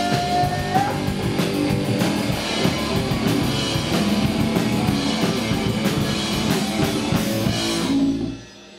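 Live rock band playing: electric guitars and bass over a drum kit with a steady cymbal beat. A held sung note ends with a short upward bend about a second in, and the band plays on.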